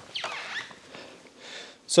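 Clothing rustling and a short squeak as a person swings a leg over and settles onto a motorcycle seat.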